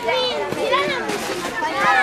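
A group of children talking and calling out at once, several high voices overlapping in lively chatter.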